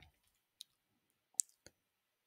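Three faint, short computer mouse clicks, the loudest about a second and a half in, followed quickly by a quieter one.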